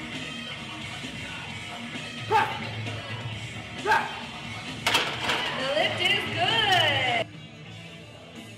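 Background music under loud shouting voices: two short shouts, then a longer stretch of yelling with rising and falling pitch that cuts off suddenly about seven seconds in.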